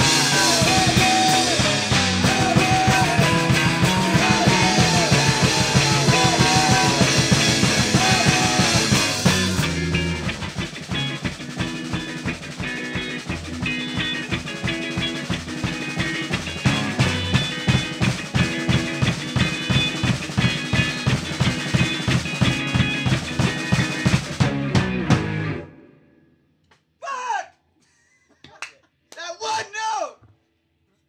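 Rock band playing live on bass guitar, electric guitar and drum kit: dense and loud for the first ten seconds, then thinner over a steady drum beat, stopping abruptly about 25 seconds in. A few short bursts of voice follow.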